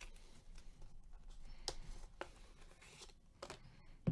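Faint peeling and rustling as a foil sticker seal is pulled off a trading-card package by gloved hands, with a few sharp clicks of a clear plastic card holder being handled in the second half.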